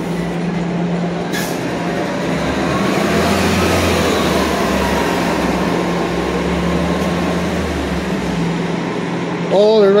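Low rumble of a heavy vehicle passing on a city street, building a couple of seconds in and fading out near the end, over a steady hum and general street noise. A voice starts just at the end.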